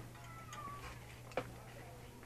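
A faint, drawn-out animal call falling slightly in pitch, then a single sharp click about one and a half seconds in.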